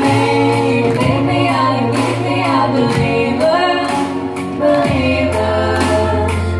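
Three girls singing in harmony through microphones and a PA speaker, holding long vocal lines over a backing track with a steady bass line that drops out midway and comes back near the end.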